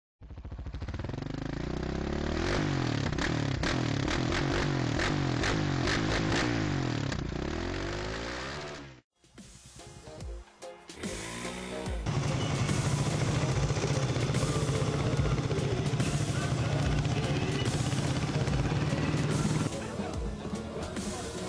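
Several quad engines revving, their pitch sweeping up and down over one another, for about nine seconds. After a brief drop-out, a steady humming tone with music runs until just before the end.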